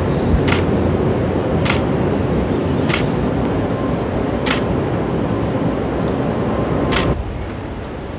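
Steady background noise with five sharp single clicks of a stills camera shutter, spaced a second or more apart. About seven seconds in, the noise drops suddenly to a quieter room tone.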